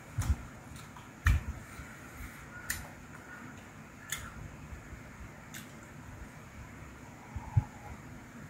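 Small eating and tableware sounds at a table: about six light clicks and knocks, scattered and spread out, the one about a second in with a soft thump, over a steady low hum.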